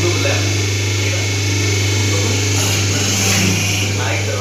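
Semi-automatic hydraulic paper plate making machine running with a steady low hum, and a hissing rush about two and a half seconds in as the press is worked. Faint voices run underneath.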